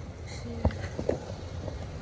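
Skateboard wheels rolling on an asphalt street with a steady low rumble, and a sharp knock about two-thirds of a second in and a lighter one near one second, as the wheels hit bumps in the road.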